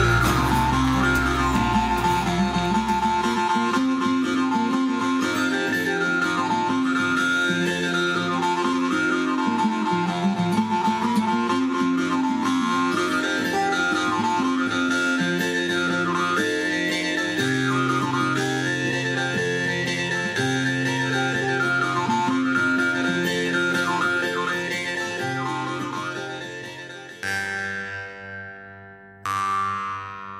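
Jew's harp (jaw harp) music: a twanging drone whose overtones sweep up and down in a melody about once a second, over low notes that change every few seconds. It fades out near the end.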